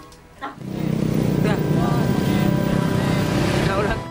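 A loud, steady low rumble starts about half a second in and holds, with faint voices beneath it.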